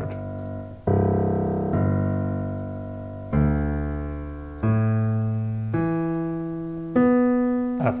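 Digital piano playing fifths in stacked steps up the keyboard from the lowest C: six struck intervals about a second or more apart, each held to ring and fade, each higher than the last.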